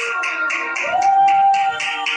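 Trumpet played live, holding a long note that scoops up into pitch about a second in, over a steady beat of about four strokes a second.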